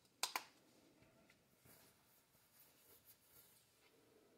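Two quick sharp clicks close together just after the start, from the plastic diff-fluid bottle being handled and set aside, followed by faint small handling ticks and rustles against near silence.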